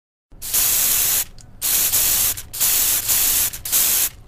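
Aerosol spray-paint can hissing in four short bursts, each under a second long, with brief pauses between them.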